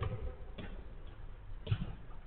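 A few faint thuds of a football being kicked on an artificial-turf pitch, about half a second in and again near the end.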